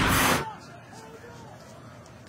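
A broadcast transition whoosh, a short rushing sound effect that cuts off about half a second in. It is followed by faint stadium crowd noise with distant voices.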